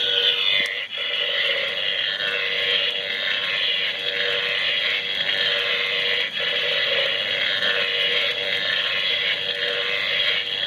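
Animated 'Danger High Voltage' fuse box Halloween prop running, its small speaker playing a steady buzzing sound effect while its hoses whip about.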